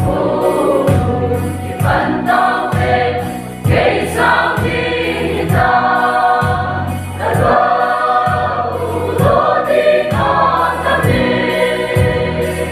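A mixed choir of women's and men's voices singing a gospel hymn in sustained phrases, over a low accompaniment that moves in steady steps.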